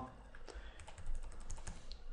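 Faint, rapid clicking of computer keyboard keys being typed, about ten clicks a second.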